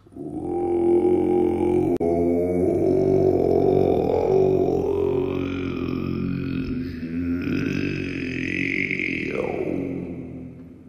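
Didgeridoo playing one long droning note with shifting, voice-like overtones and rising sweeps partway through and near the end.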